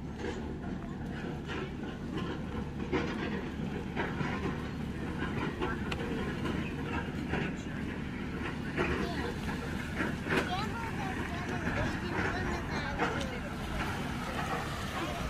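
Footsteps crunching irregularly on gravel and pebbles, with people's voices in the background over a low steady rumble.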